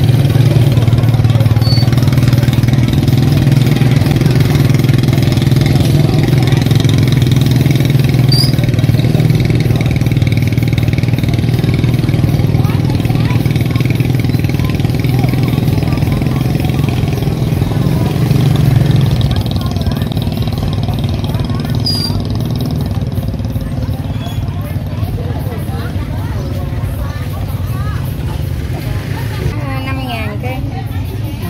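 A motorbike engine running steadily close by, fading away about two-thirds of the way through, with people's voices around it.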